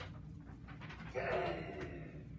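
A short, breathy vocal sound from a child, starting a little over a second in and lasting under a second.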